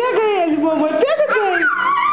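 A toddler's voice babbling and squealing in short pieces that slide up and down in pitch.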